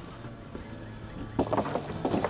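Skateboard wheels rolling on concrete with light board clatter, then music comes in about one and a half seconds in with a bass line and drum hits.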